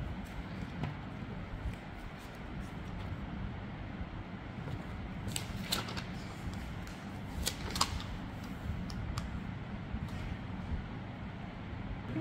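A steady low hum with a few faint, short clicks, two pairs in the middle and a couple of lighter ones later, like small handling noises.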